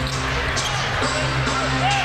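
Game sound on an indoor basketball court: steady background music with a basketball bouncing on the hardwood a couple of times.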